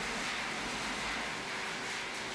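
Steady rushing noise of straw burning in the combustion chamber of a 1.2 MW straw-fired biomass boiler, with a faint low hum coming in about a second and a half in.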